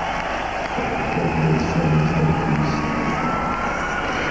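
Live arena concert sound: a large crowd cheering and shouting, with a low pitched sound from the PA underneath that swells between about one and three seconds in.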